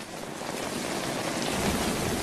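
Heavy, torrential rain falling in a steady hiss that grows slightly louder.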